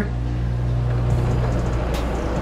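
Air conditioner running with a steady low hum, way too loud.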